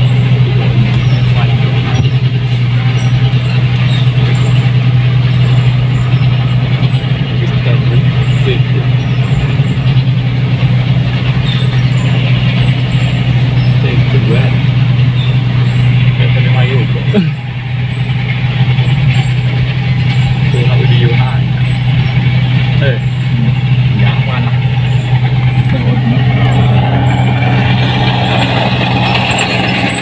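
New Holland 8060 combine harvester's diesel engine running steadily as the machine drives along a road, a loud, even low drone, with motorcycle engines close by.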